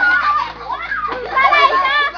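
A group of children talking and calling out over one another as they play, their voices overlapping, dipping a little in the middle and picking up again toward the end.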